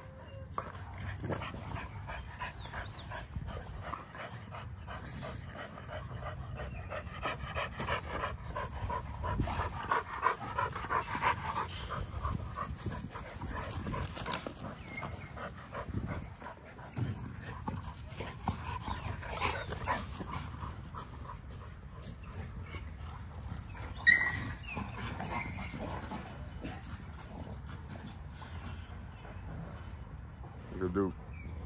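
XL American Bully puppies and an adult dog play-fighting: scuffling and panting, with small whimpers, and one sharp yelp about four-fifths of the way through.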